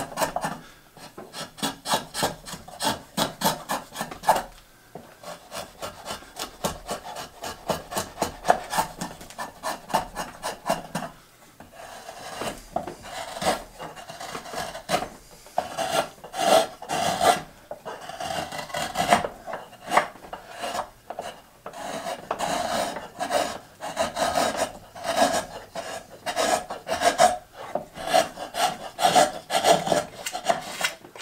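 Hand carving of a wooden boat hull: a rasp is pushed over the wood in quick, even strokes, about three a second. From about halfway, rougher, uneven cuts follow as a carving knife slices shavings from the bow.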